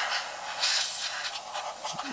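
Can of compressed air duster spraying a continuous hiss through its thin straw into a portable CD player's open disc compartment, blowing the dust out. The hiss swells slightly about half a second in.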